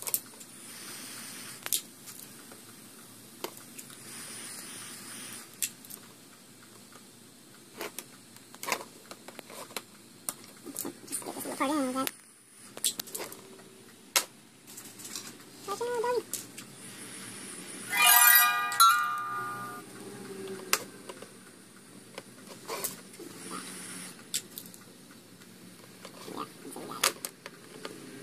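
Small metallic clicks and taps of needle-nose pliers working on the metal antenna connector of a radio-control transmitter, with a few brief muttered sounds and one louder short sound a little past the middle.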